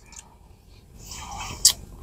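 A person's soft intake of breath, rising about a second in, with a single sharp mouth click near the end.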